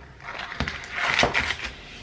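A knife slicing a piece off a block of butter in its paper wrapper: rustling of the wrapper and the cut, with a couple of light knocks.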